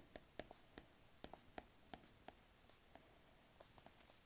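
Faint, irregular ticks of a stylus tip tapping and sliding on a tablet's glass screen while handwriting, with a brief soft hiss near the end.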